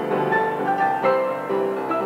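Grand piano playing a flowing passage, new notes struck several times a second over held lower notes.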